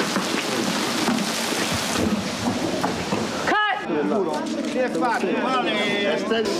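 Steady heavy rain for the first three and a half seconds. It cuts off abruptly, and one loud voice calls out once, rising and falling in pitch, followed by several people's voices talking.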